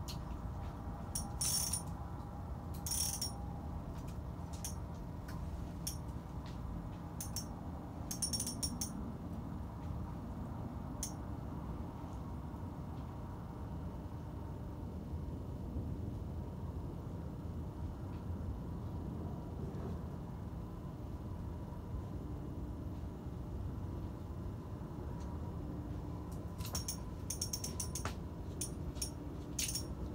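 Spinning reel being cranked to bring in a hooked catfish, its gears ticking, with groups of sharp clicks near the start, around eight seconds in, and near the end, over a steady low rumble.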